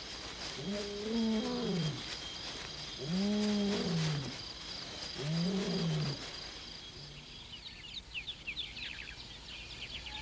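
Lions roaring: three long, deep calls, each rising and then falling in pitch, a second or so apart, over a steady chirring of night insects. These are the territorial roars of the rival males the pride is avoiding. The insects fade about seven seconds in, and birds begin chirping near the end.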